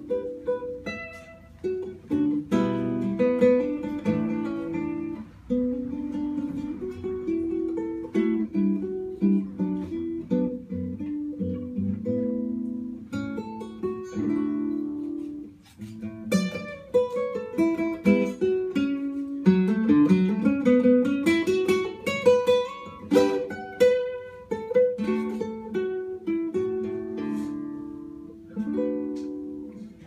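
Solo acoustic guitar playing a Haitian folk song fingerstyle: a plucked melody over low chords and bass notes, with a quick run of notes climbing in pitch about two-thirds of the way through.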